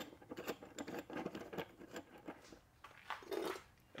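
Metal frame tubes being screwed together and handled by gloved hands: a run of light, irregular clicks and small rattles that thins out after about two seconds.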